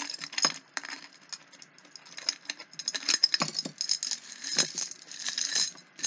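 Loose jewelry and beads clinking and rattling against a glass jar as it is handled, a busy run of small sharp clicks throughout.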